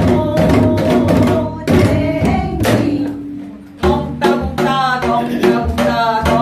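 Janggu, the Korean hourglass drum, played in the fast jajinmori rhythm with a quick run of strokes, and a woman singing a Gyeonggi folk song over it. The drumming thins out briefly a little after halfway, then comes back in with the singing.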